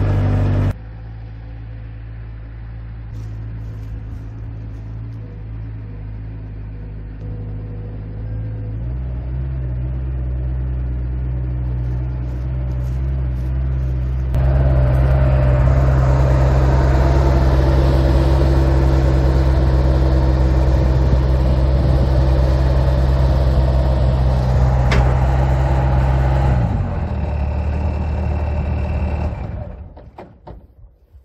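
Bobcat 763 skid-steer loader's diesel engine running under way, its steady drone stepping louder a couple of times as the throttle comes up. Near the end it drops back to idle, then cuts off.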